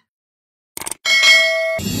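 A moment of silence, then a short click and a bright bell ding: the sound effects of a subscribe-button animation. Jingle-bell Christmas music starts near the end.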